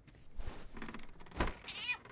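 Bedclothes rustling and a soft thump, then a short cat meow near the end.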